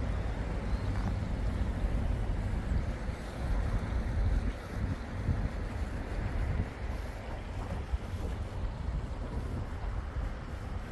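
Wind buffeting the microphone: a low rumbling noise that swells and dips unevenly, with a fainter hiss of outdoor background noise above it.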